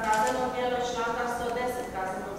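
Speech: a voice reading out a court sentence in Croatian.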